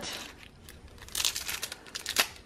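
Clear plastic wrap crinkling as it is peeled off a small cardboard cosmetics box. The crinkling is mostly in the second half, in a quick run of crackles.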